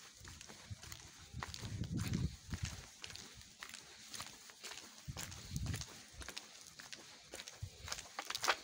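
Footsteps on a dirt road at a walking pace, short crunching steps about once a second. Low rumbles on the microphone swell about two seconds in and again just after five seconds.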